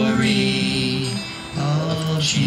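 Two men singing together, accompanied by two strummed acoustic guitars, in long held notes with a short break about a second and a half in.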